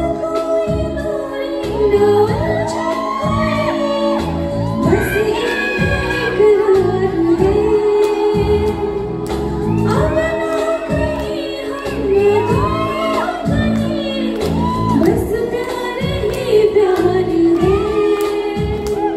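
A woman singing a song into a microphone, amplified through a PA, over instrumental accompaniment with a steady beat and bass line. Her voice carries the melody in long, bending phrases.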